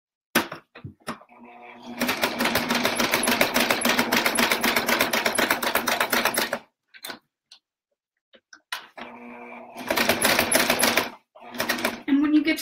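Brother sewing machine with a walking foot stitching through the thick quilted layers of an oven mitt, in two runs of rapid, steady needle strokes. The first run starts slowly about a second in and lasts about four seconds. After a pause with a few clicks, a second, shorter run of about two seconds comes near the end.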